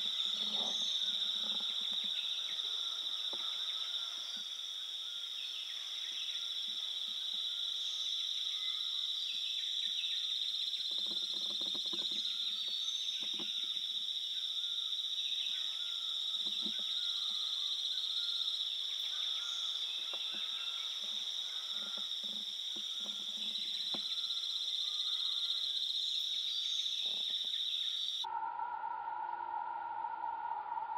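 A steady, shrill chorus of forest insects, with faint scattered calls beneath it. Near the end it cuts off suddenly and a steady electronic-sounding tone takes over.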